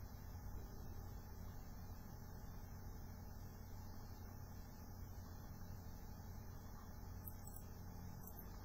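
Steady low background hiss with a faint low hum from the recording microphone, and a few faint clicks near the end.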